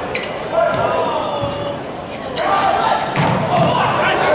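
Indoor volleyball rally: a series of sharp smacks as the ball is passed, set and hit, with players shouting calls between touches and the hall echoing.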